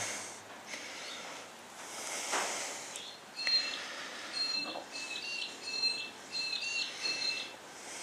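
A small bird chirping in short, repeated high notes, starting about three and a half seconds in. Before it there is a soft hiss about two seconds in.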